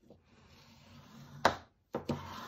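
Bone folder drawn across cardstock to smooth it flat: a faint rubbing hiss that grows over about a second, then a single sharp tap about a second and a half in.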